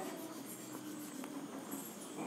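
Faint scratching of a marker pen drawing lines on a whiteboard.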